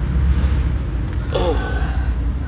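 A steady low rumble of background noise, with a brief voice about one and a half seconds in.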